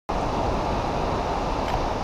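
Steady wind rushing and buffeting on the camera's microphone, heaviest in the low rumble.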